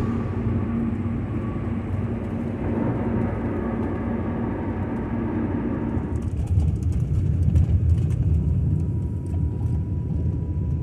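Steady road and engine rumble inside the cabin of a moving 2019 Ford Transit van. About six seconds in it changes to a deeper, heavier rumble with less hiss, with light clicks over it.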